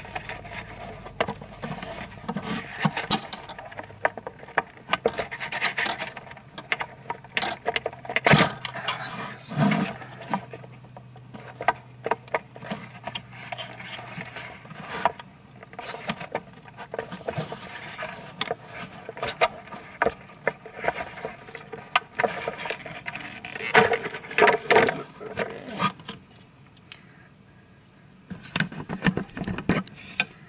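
Hand working plastic parts inside a 3D printer's enclosure: scattered clicks, knocks and scraping of plastic, loudest about eight seconds in and again around twenty-four seconds.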